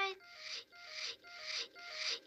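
A short hissing sound with a faint steady tone, repeated four times in quick even succession, each repeat swelling in level: a stutter loop cut into the edited cartoon soundtrack.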